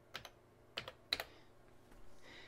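Keys pressed on a TRS-80 Model 4 keyboard: three sharp clicks within the first second or so, the last the loudest, as the last letter of a typed command and the Enter key go in.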